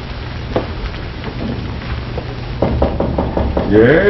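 Worn old television soundtrack: a steady low hum and hiss with scattered crackling clicks, a run of soft knocks in the second half, and a voice starting near the end.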